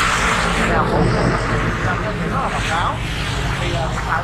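A man speaking Vietnamese over a steady rushing background noise that is strongest in the first two seconds.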